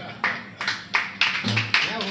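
Acoustic guitar strummed in a steady rhythm of short strokes, about three a second.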